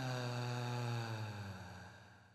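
A low voice intoning a long chanted "ahm", its pitch sliding down at the start and then held on one low note before fading away over the last second.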